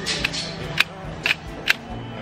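Sharp plastic clicks, about five in two seconds, from hands working the buttons and casing of a camcorder being tried out.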